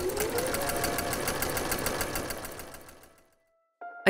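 Electric sewing machine running at speed, its needle stitching in a rapid, even clatter, which fades out about three seconds in.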